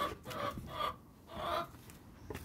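A chicken clucking a few times, short and quiet, from inside the steel drum of a front-loading washing machine.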